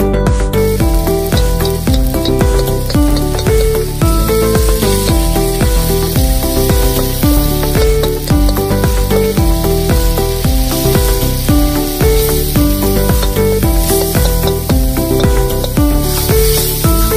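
Hot oil sizzling steadily as tomatoes and spice paste fry in a kadai, under background music with a steady beat.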